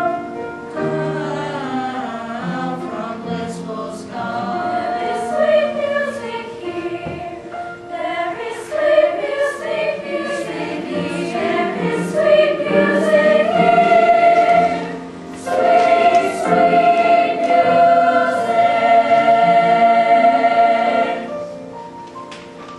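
Mixed youth choir singing in parts, the voices moving through a phrase and then holding a long note near the end before the sound drops away.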